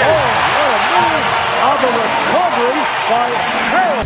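Basketball arena crowd cheering after a basket: a steady roar with many voices shouting over it. It cuts off suddenly at the end.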